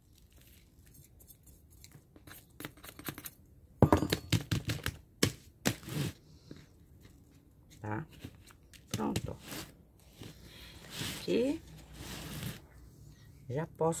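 Potting soil being handled: a metal spoon scoops substrate and tips it into a plastic pot, then fingers press and rustle the soil around the succulent rosettes, giving scattered sharp clicks and scrapes. The loudest clicks come in a cluster about four to six seconds in.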